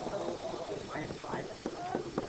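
Faint, indistinct talking, too low to make out words.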